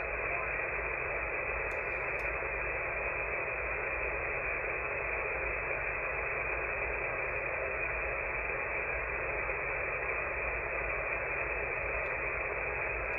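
Steady static hiss from a shortwave receiver in upper-sideband mode on 27.455 MHz, with no station audible: the signal there has faded out, a sign that the 11-metre band is not yet fully open.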